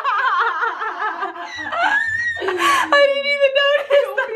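Two young women laughing hard, the laughter wobbling up and down in pitch, then a voice holds one high, steady note for about a second near the end.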